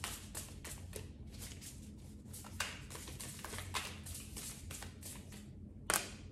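Tarot cards being shuffled and handled: a steady run of quick, soft flicks and rustles, with one sharper snap near the end.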